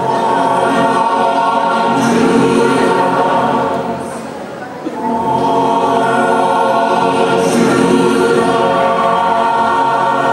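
Choir singing long held chords, easing off about four seconds in and swelling back a second later.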